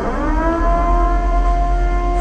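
A loud siren-like tone that sweeps up in pitch over about half a second, then holds steady.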